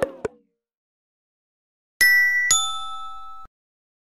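Phone low-battery alert sounds: the last short, clicky notes of the Xiaomi alert right at the start, then about two seconds in the ZTE low-battery alert, two bright chime notes half a second apart that ring and die away, cut off suddenly about a second and a half later.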